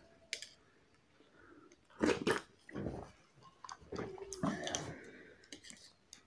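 A metal spoon clicking and scraping in a plastic cup of raib (Moroccan set yogurt), with wet mouth sounds of eating it in several short bursts.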